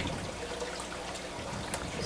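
Aquarium water trickling steadily, an even low splash with no break.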